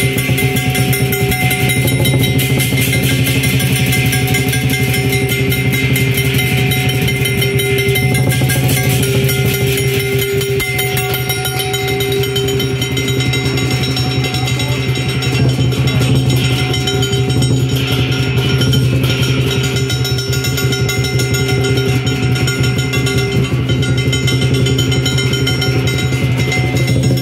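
Lion-dance percussion: a large Chinese lion drum beaten in a fast, unbroken rhythm with crashing hand cymbals and a ringing gong, played loudly and continuously.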